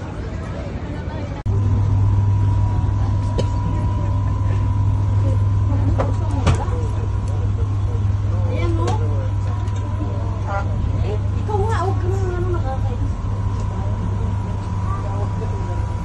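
Passenger boat heard from inside its cabin: a steady low engine hum with a thin steady whine above it, starting abruptly about a second and a half in. A few sharp knocks come through in the middle.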